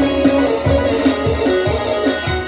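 Albanian folk music: a plucked string instrument plays over a steady low beat of about two beats a second.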